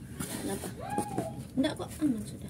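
Quiet voices in the background, with a few light clicks of ice cubes shifting against fish in a styrofoam cooler about one and a half seconds in.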